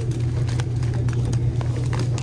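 Steady low background hum in a grocery store, with a few faint rustles and taps as a hand handles plastic bags of pretzels on a wire shelf.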